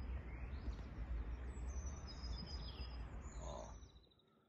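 Outdoor ambience: small birds chirping in short high calls over a steady low rumble and hiss, which cut off abruptly just before the end.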